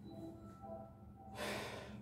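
A man's breath, one short audible inhale drawn in near the end, over faint room tone.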